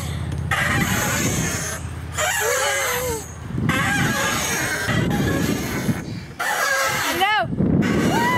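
Wind buffeting the camera microphone as a wooden chain swing moves back and forth, the rush rising and dropping about every second and a half with each swing. A short high squeal comes near the end.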